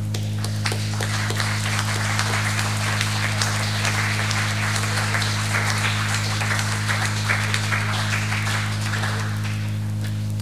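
Audience applauding, building about a second in and dying away near the end, over a steady low hum in the recording.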